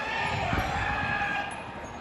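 A person's high-pitched voice calling out, echoing in a large hall.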